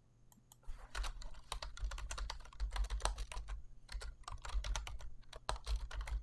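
Typing on a computer keyboard: a quick, irregular run of key clicks that starts just under a second in.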